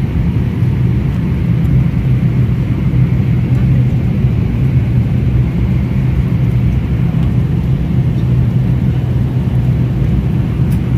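Airliner cabin noise in flight: the steady low drone of the jet engines and airflow, even in level, with a thin hiss above it.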